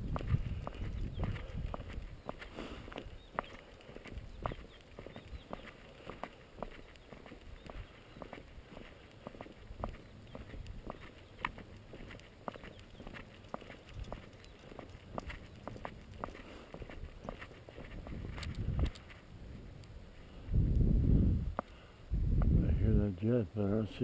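Footsteps walking on a dirt and gravel road: many small irregular crunches. Near the end there is a short low rumble, then a man's voice.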